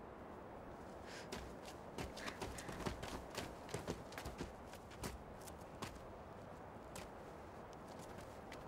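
Footsteps of several people walking over gravelly dirt ground: faint, irregular steps.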